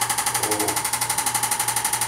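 Arthrostim handheld electric chiropractic adjusting instrument tapping rapidly against the lower back during an adjustment: a steady, even buzz of about twelve taps a second.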